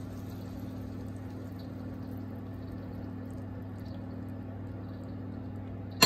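A steady low hum with a faint even hiss behind it, while cream is poured into a frying pan of fried mushrooms and shallots; the pour makes no distinct sound of its own.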